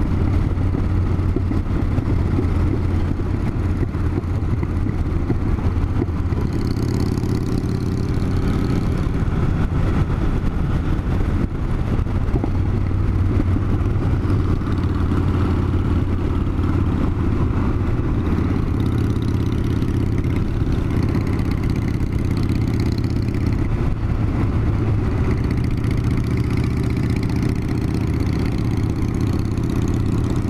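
Cruiser motorcycle engine running steadily at road speed, heard from the rider's seat with wind rushing past, along with the engine of a second motorcycle riding close ahead.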